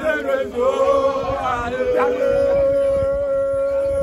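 A group of people singing a chant together, with one long note held through the second half.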